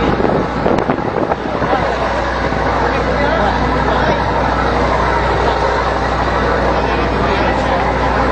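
Steady low drone of a ship's machinery under a loud, even rush of noise, with people talking in the background.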